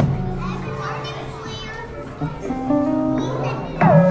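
Small live band with keyboard and acoustic guitar playing soft sustained chords, with children's voices chattering over it. Near the end a voice slides sharply down in pitch.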